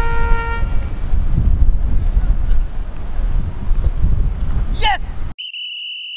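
Wind rumbling loudly on the camera microphone outdoors, with a brief voice call near the end. A musical note fades out in the first second. About five seconds in, the sound cuts off abruptly to a steady two-pitched electronic tone effect.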